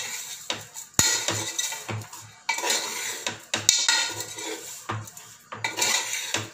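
A metal spoon scraping and knocking against the inside of a metal pressure cooker while stirring mutton bones and spices, in irregular strokes with a sharp knock about a second in.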